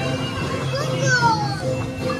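Festive music from a boat ride's soundtrack with a steady bass line, and a high voice calling out in falling glides about a second in.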